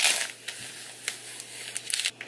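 Clear plastic packaging film crinkling as it is peeled off a new keyboard, with a louder crackle at the start and a sharp one near the end.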